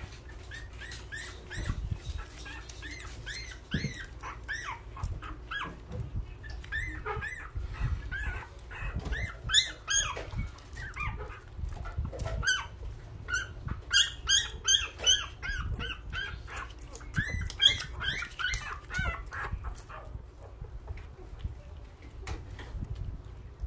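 A litter of newborn puppies crying: many short, high-pitched squeals and whimpers, each rising and falling in pitch and overlapping one another, thinning out near the end. These are the cries of hungry newborn pups.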